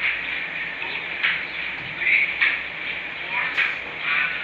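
Indistinct voice sounds with no clear words, coming and going in short patches.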